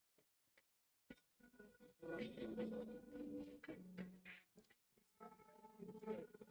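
Quiet room with low, indistinct voices, preceded by a single sharp click about a second in.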